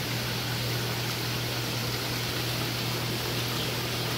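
Steady hiss of circulating aquarium water with a low, even hum from the system's pump.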